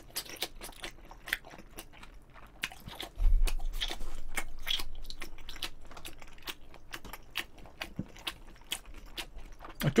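Close-miked chewing of jjolmyeon noodles: quick, wet mouth clicks and smacks. A low thump comes about three seconds in and fades over the next few seconds.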